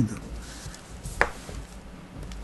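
Pause in speech: low room hum, with a single short click a little over a second in from hands handling papers on a desk.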